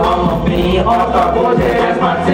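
Hip-hop beat playing loud through a club PA, with voices chanting over it.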